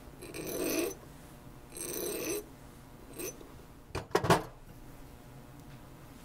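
Flat hand file rasping across a small silver bezel cup in two strokes of under a second each, taking off excess solder. A few light metallic clicks follow about four seconds in.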